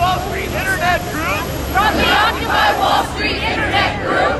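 A crowd shouting a speaker's words back in unison, phrase by phrase: a "people's mic" call-and-response, many voices slightly out of step with one another.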